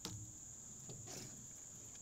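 Faint, steady high-pitched chorus of insects, with a short click right at the start.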